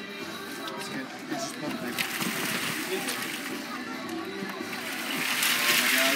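Boiled crawfish, corn and potatoes pouring out of a tipped perforated aluminum boil basket onto a newspaper-covered table: a dense, noisy rush that builds from about two seconds in and is loudest near the end.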